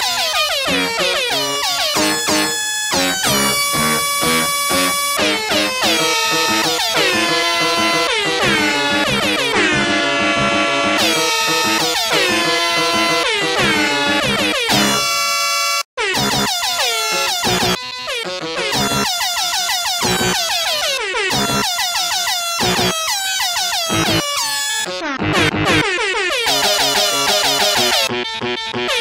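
A song's melody played with pitched air-horn honks over a backing track, the horn notes stepping up and down in a quick rhythm. The music cuts out completely for an instant about halfway through.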